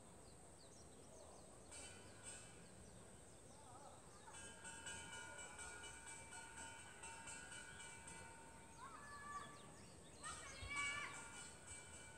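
Faint outdoor ambience in a wooded garden, with small bird chirps early on. From about four seconds in, faint distant music with long held notes comes in, briefly louder near the end.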